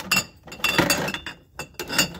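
Glass beer bottles clinking against each other and the fridge's wire rack as a hand rummages among them: a quick, irregular series of sharp, ringing clinks, thickest around the middle.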